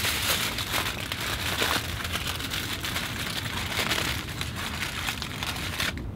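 Aluminium foil crinkling steadily as it is wrapped and pressed by hand around a bagged air layer on a fig branch.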